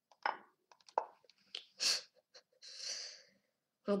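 A boy's breath and mouth noises: short, sharp intakes and a longer, hissing exhale, between a few faint clicks.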